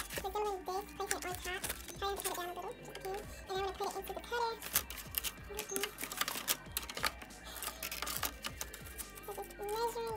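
Background music with a sung melody and sharp, clicky percussion.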